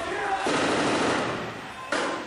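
Gunfire echoing in a room: a burst of rapid fire lasting about a second begins about half a second in, and a single sharp report comes near the end. Men's voices are heard at the start.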